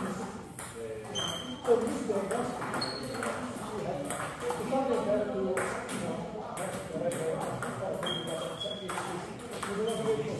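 Table tennis ball being played in a rally: a series of sharp clicks as it strikes the paddles and the table, each with a brief ping.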